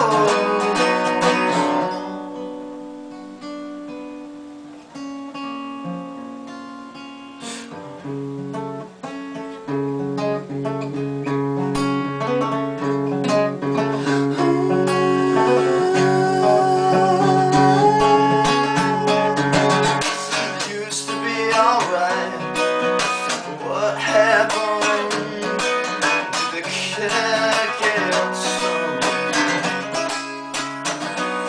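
Steel-string acoustic guitar played solo, with quieter picked notes for the first several seconds, building into fuller strumming from about eight seconds in.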